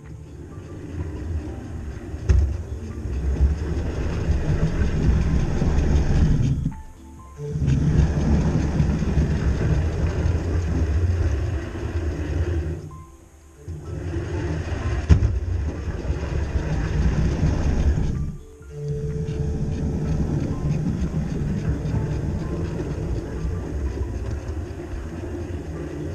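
OO gauge model locomotive (Hornby Turbomotive 4-6-2) running on model railway track, its motor and wheels making a steady low rumble that stops briefly three times, at about a quarter, half and two-thirds of the way through.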